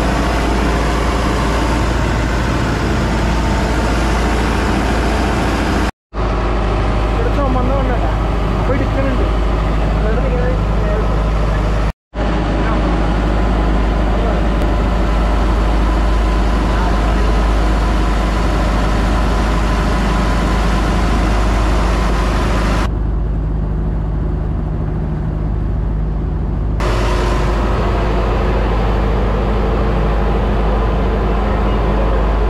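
Motorboat engine running steadily while the boat travels at speed, mixed with wind rumble and rushing water from the hull. The noise breaks off for two very short gaps.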